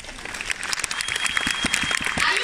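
Audience clapping in a large hall, growing louder and denser.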